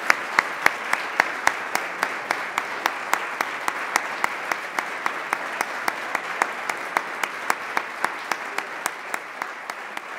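Audience applauding, with one clapper close to the microphone standing out at a steady three to four claps a second. The applause slowly dies down.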